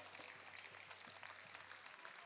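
Near silence: a few faint, scattered claps from an outdoor crowd as its applause dies away, over a faint low hum.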